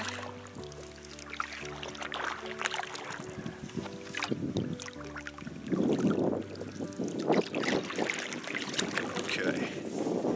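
Instrumental background music of held notes, over water noise from a canoe being paddled; the rough splashing grows much louder about halfway through.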